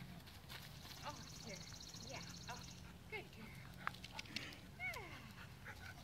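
Faint outdoor sounds: scattered short calls that fall in pitch, a rapid high trill from about one second to nearly three seconds in, and light crunching steps on gravel.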